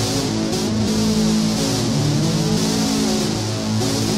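Electric guitar played through a Behringer UM300 distortion pedal: heavily distorted notes, each held for about half a second to a second before moving to the next.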